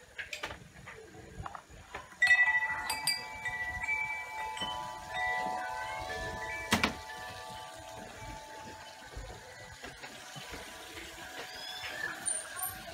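Metal wind chimes ringing: a cluster of clear, overlapping notes starts suddenly about two seconds in and fades slowly over the next several seconds.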